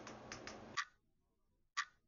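Clock ticking sound effect: a few quick ticks over faint room noise, then, after a cut to dead silence, single ticks about a second apart.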